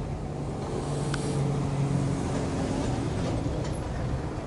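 A vehicle engine running with a low, steady hum that grows a little louder in the middle and eases off near the end.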